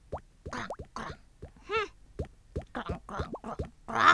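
A quick run of short, bubbly cartoon pop sound effects, about a dozen over four seconds, each a brief upward blip, with one wobbling longer one near the middle.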